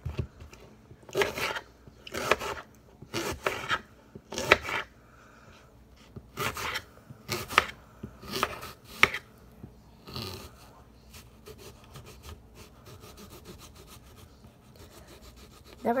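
Kitchen knife cutting through a crisp apple held in the hand: a short crunchy cut about once a second for the first ten seconds, then only faint small clicks.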